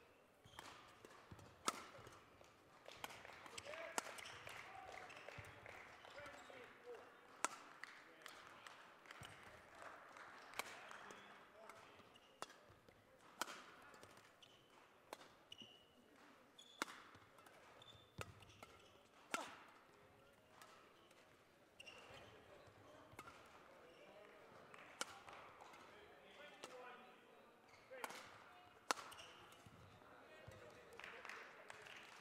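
Badminton rackets striking a shuttlecock back and forth in a long rally. The hits are sharp, single and spaced about every one to two seconds.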